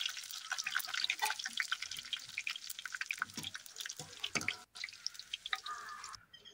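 Sliced onions deep-frying in hot oil in a steel kadai, sizzling with many small crackling pops as a wire skimmer lifts the browned onions out of the oil.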